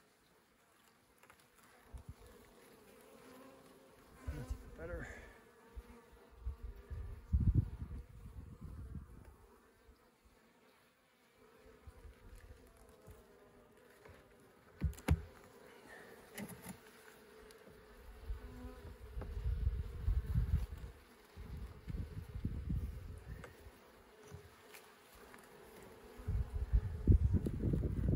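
Honey bees humming steadily over an open hive as its frames are worked. There are bursts of low rumble and a sharp knock about halfway through.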